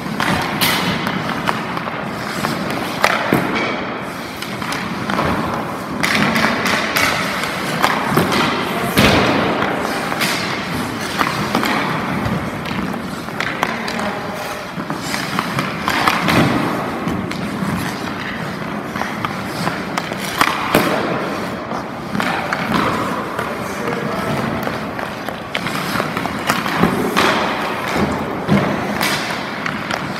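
Ice hockey skates scraping and carving on the ice, with repeated sharp knocks of sticks striking pucks and pucks hitting the goalie's pads during shooting drills.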